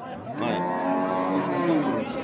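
Cattle mooing: one long call of about a second and a half that swells and then falls away slightly.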